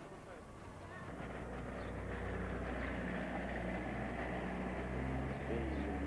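A motor vehicle engine running with a steady low note, growing louder from about a second in, with people's voices faintly over it.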